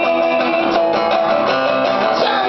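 Live punk band music, carried by a strummed, amplified acoustic guitar.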